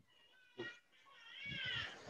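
A faint, high-pitched animal-like call, heard twice: a soft, short one at the start and a longer one in the second half that rises and then falls in pitch, growing louder as it goes.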